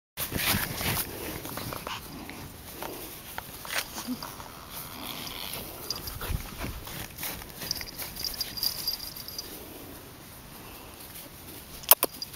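Puppies playing, with occasional short, faint dog sounds among scattered small knocks.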